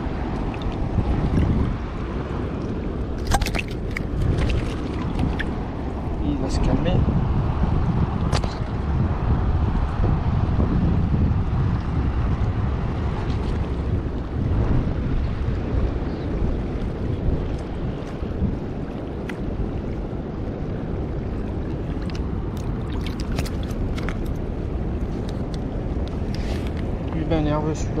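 Wind buffeting the microphone, a steady low rumble, with scattered sharp clicks and ticks.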